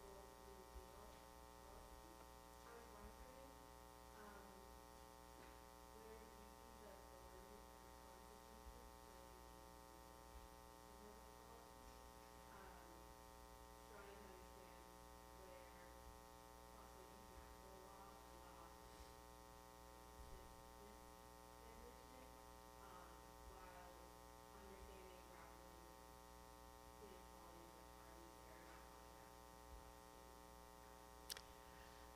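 Near silence: a steady electrical mains hum, with a faint, distant voice of an audience member asking a question away from the microphone.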